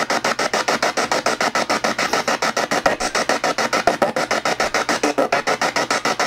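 Spirit box radio sweeping through stations: a steady stutter of static chopped into rapid pulses, about ten a second.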